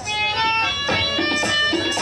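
Bulbul tarang (Indian banjo) playing a quick melodic run of plucked, metallic-stringed notes.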